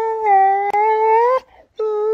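Young dog giving a long, drawn-out whining howl held at one pitch with a slight waver. It breaks off about one and a half seconds in and starts again near the end. It is a sulky protest at not being allowed to mouth her owner's hand.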